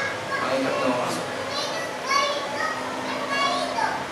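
Children talking and calling out at play, their high voices rising and falling in pitch.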